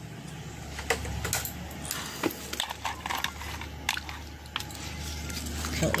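Scattered light clicks and rattles of hands handling an LED light bulb and its coiled electrical cord, over a steady low hum.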